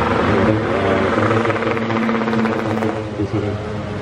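Street traffic: a motor vehicle's engine running as it passes, with voices mixed in.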